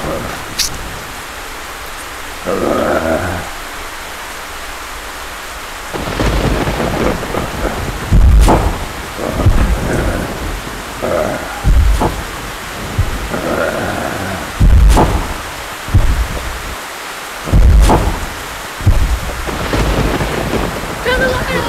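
Steady heavy rain with thunder. About six seconds in, a series of loud, deep booms with sharp cracks begins, coming every two to three seconds.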